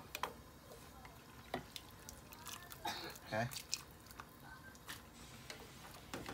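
Wooden chopsticks stirring fresh rice noodles in a stainless steel pot of boiling water: faint scattered clicks against the pot and light water sounds.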